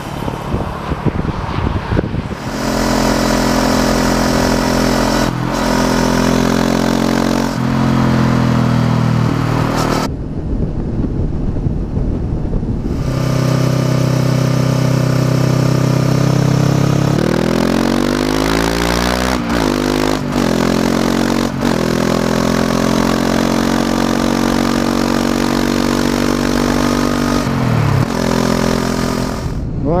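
Honda CB500X 471 cc parallel-twin engine under way through a Staintune aftermarket exhaust, heard from the bike, after a couple of seconds of rushing noise. The engine note holds steady between several drops and climbs in pitch as the rider changes gear and slows into bends.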